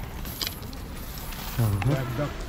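Hanging metal chains of a chain-curtain doorway clinking and jangling as people push through them. A man's voice speaks briefly near the end.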